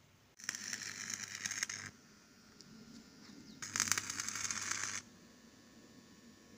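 Stick-welding arc from a Varstroj Varex 180 welder crackling on the steel gate frame in two short bursts of about a second and a half each, with a low hum under each burst.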